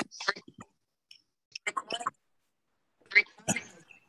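Short, broken snatches of people's voices over a video call, cut off into dead silence between them by the call's noise gating.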